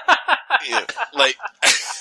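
Men laughing in quick repeated bursts, with a sharp breathy burst of laughter near the end.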